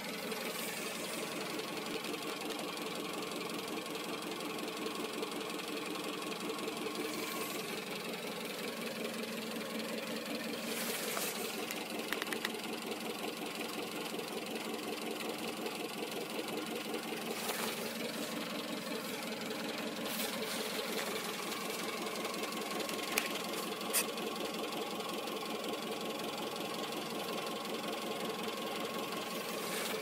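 Car engine idling steadily, with a fine rapid ticking in its note. Two short sharp clicks come about two-thirds of the way in.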